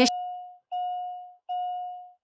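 A single bell-like chime note sounded three times, about every three-quarters of a second, each note fading away before the next.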